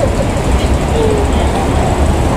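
Steady outdoor city background noise: a constant low traffic rumble, with a couple of brief faint snatches of voice.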